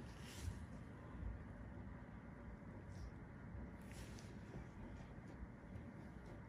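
Faint room noise with a low rumble and a few soft, brief rustles: one near the start, one about three seconds in and one about four seconds in.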